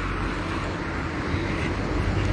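Steady street traffic noise: the low, even rumble of cars running on a city street.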